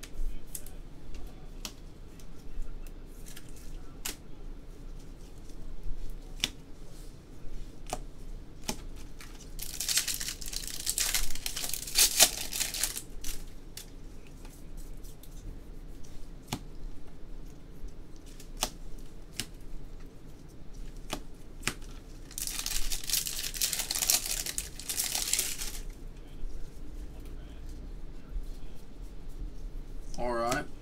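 Foil trading-card pack wrappers torn open twice, each a few seconds of tearing and crinkling, with light clicks and flicks of cards being handled in between.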